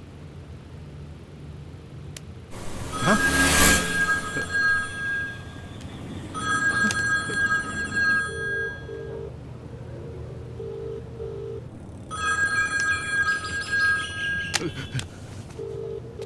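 A mobile phone ringtone of high electronic beeping tones sounds in three bursts of about two seconds each. Between the bursts a low tone pulses in pairs, like the ringback tone heard in a caller's earpiece. About three seconds in, a vehicle passes with a brief whoosh.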